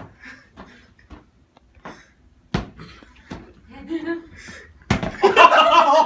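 A ball thudding several times as it is thrown about in a game of monkey in the middle, followed by loud laughter near the end.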